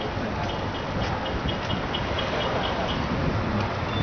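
Steady rush of wind and road noise while riding a bicycle in city traffic. A faint series of short, high beeps repeats about three times a second through the middle of it.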